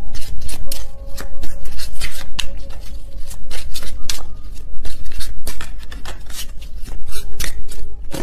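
A tarot deck shuffled by hand: a fast, uneven run of card snaps and rustles, with faint background music underneath.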